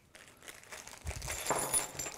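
A small plastic bag crinkling as loose metal hardware (nails, keys, hooks) spills out onto a wooden tabletop with light clinks, starting about a second in.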